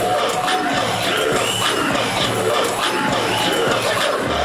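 Dance music playing loud over a hall's speakers, with an audience cheering and shouting over it.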